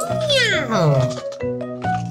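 A meow, one call about a second long that rises and then falls in pitch, over light children's background music with short, steady notes.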